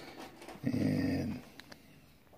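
A dog making one short, steady low vocal sound lasting under a second, about a third of the way in. A couple of faint clicks follow near the end.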